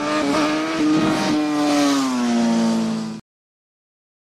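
Outro logo sound effect: a loud, steady buzzing tone over a hiss. It slides slightly down in pitch about two seconds in, then cuts off abruptly about three seconds in.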